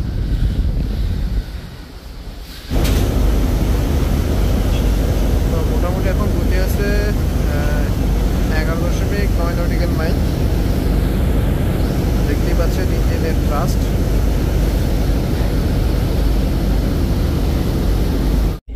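Wake water churning and rushing behind a large river passenger launch, loud and steady from about three seconds in, over a continuous low rumble of the vessel's engines.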